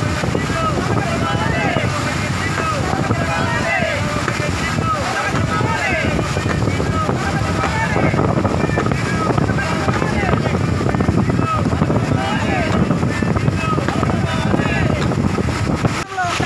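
Water rushing steadily over a low weir, with wind on the microphone. Over it, a group of men's voices shout, the raised-fist slogans of a protest.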